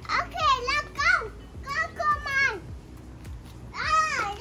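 A toddler's high-pitched voice babbling in three short phrases without clear words, with a fourth starting near the end.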